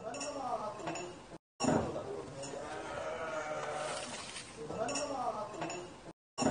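Voices of several people talking and calling out over each other, without clear words, broken by a brief cut to silence about one and a half seconds in.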